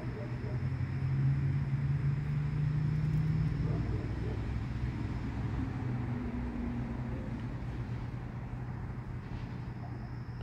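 A low, steady engine hum, like a motor vehicle running nearby. It swells for a few seconds and then eases off slightly.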